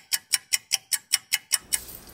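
Rapid, evenly spaced clock-like ticking, about five ticks a second, over otherwise silent audio; it stops about one and a half seconds in, giving way to faint room noise.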